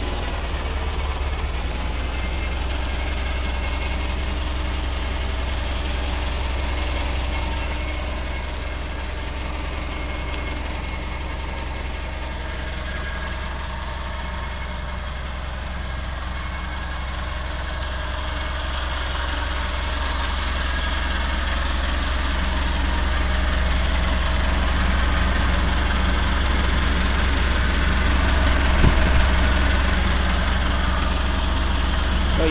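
Propane-fuelled Clark forklift engine idling steadily, growing louder over the last third, with one brief knock near the end.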